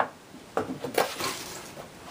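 Clear plastic packaging and a copper heatsink being handled as they are lifted out of a cardboard box: a sharp click at the start, then a few lighter clicks and rustles.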